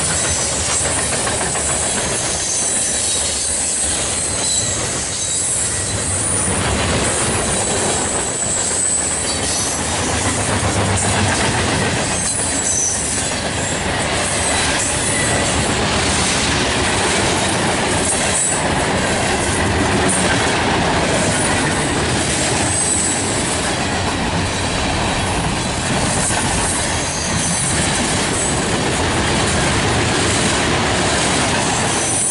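Covered hopper cars of a mixed freight train rolling past close by: a steady, loud rumble and clatter of steel wheels on the rails, with a thin high wheel squeal coming and going.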